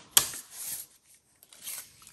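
A paper envelope being handled and slid across a table: a sharp tap just after the start, then rustling that dies away briefly and returns softly near the end.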